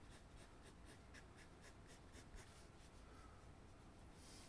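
Pencil scratching on paper in quick, short hatching strokes, faint and regular at about four strokes a second.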